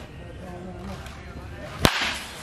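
Baseball bat striking a ball during a full swing: one sharp crack near the end.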